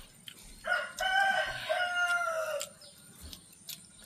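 A rooster crowing once: a single call of about two seconds that drops in pitch as it ends.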